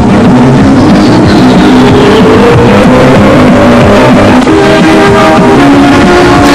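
Loud instrumental opening theme music of a news programme, dense with percussion and sustained tones, with one tone rising in pitch over the first couple of seconds.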